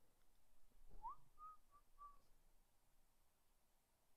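A faint, short whistled phrase about a second in: a quick upward slide, then three short notes at the same pitch. The rest is near silence.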